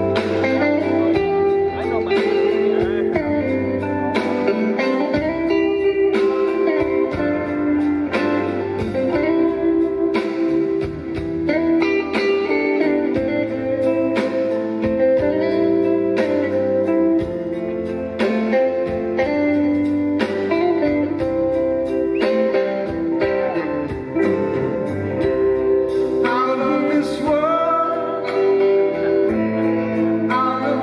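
Live rock band playing a slow song: electric guitars over electric bass, with drums keeping a steady beat.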